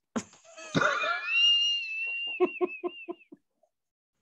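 People laughing hard: a high, squealing laugh held for over a second, breaking into a run of short, even laugh pulses, then cutting off to silence about three seconds in.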